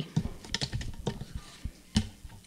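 A quick, irregular run of light clicks and taps, with one sharper click near the end.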